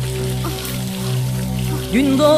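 Film background music holding a steady low drone, with water splashing as a pot of water is poured over a person's head. Near the end a voice slides up into song.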